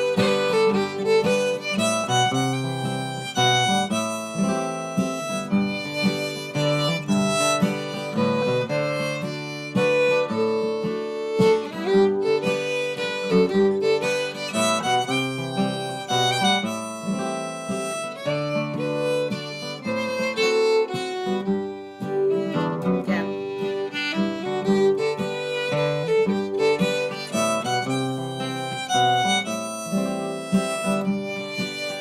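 Fiddle and acoustic guitar playing a slow waltz in G together: the fiddle bows the melody while the guitar strums the chords.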